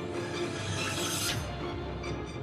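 A rising whoosh sound effect over music, swelling and then cutting off sharply about one and a half seconds in, with a low boom starting as it stops.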